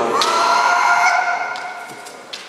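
Kendo kiai: a competitor's long, drawn-out shout that rises in pitch at its onset and is held for about a second and a half before fading.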